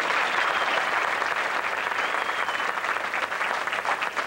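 Audience applauding steadily: a dense patter of many people clapping at once.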